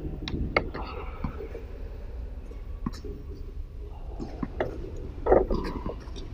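Tennis ball struck softly by racquet strings and bouncing on a hard court: a series of light pops and taps at uneven spacing, the loudest a little over five seconds in.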